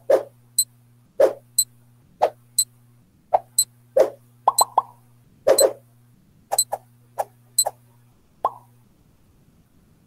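Countdown timer sound effect: a plopping tick alternating with a higher click, about two sounds a second, over a low steady hum, all stopping about nine seconds in.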